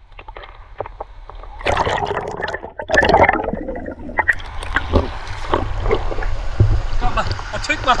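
Water sloshing, splashing and gurgling around a camera in a waterproof housing as it is dipped under the surface and brought back up, the sound muffled by the case. It starts quiet and turns loud and busy with bubbling clicks about a second and a half in.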